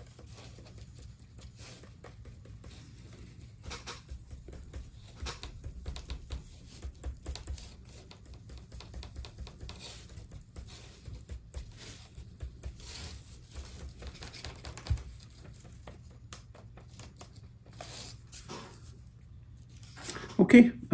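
A homemade static grass applicator, a small stainless mesh strainer on a bug zapper, is tapped and shaken over a glued board, giving light, irregular tapping and rattling as static grass fibres sift through the mesh. A faint steady low hum runs underneath, and there is one sharper knock partway through.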